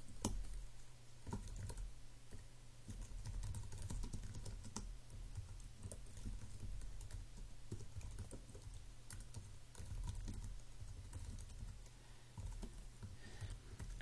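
Typing on a computer keyboard: a faint, irregular run of key clicks as code is entered, over a steady low hum.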